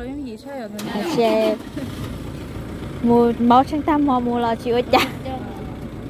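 Toyota Hilux pickup's engine starting about a second in, then idling steadily.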